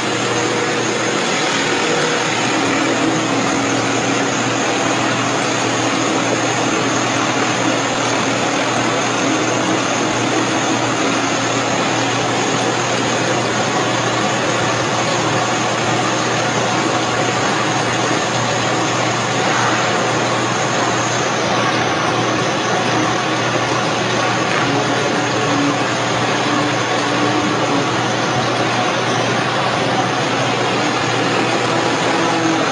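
Oil press machine running with a steady mechanical hum and noise that does not change.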